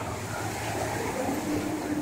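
Steady running noise of a moving train heard from inside the carriage, with a faint low hum coming in about halfway through.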